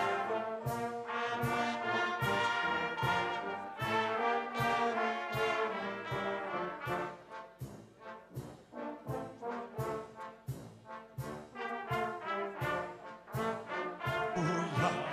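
Church orchestra with a prominent brass section, trombones and tubas among it, playing an instrumental passage over a steady beat of about two strokes a second. It drops to a softer level about halfway through.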